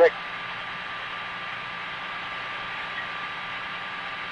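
Steady hiss with a thin, steady tone underneath: the background noise of the Apollo 8 onboard voice recording.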